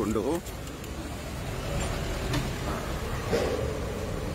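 Low, steady rumble of passing road traffic.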